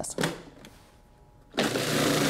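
Countertop food processor switched on about one and a half seconds in, its motor starting abruptly and running with a steady hum as the blade chops fresh herbs, garlic, lemon juice, vinegar and olive oil into chimichurri.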